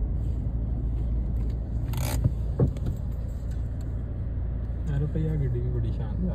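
Steady low rumble of a car heard from inside the cabin, with a short hiss about two seconds in and a sharp click just after it. Voices come in near the end.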